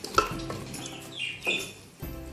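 Wooden spoon stirring chicken masala in a large aluminium pot, knocking against the pot sharply once just after the start and again about halfway through.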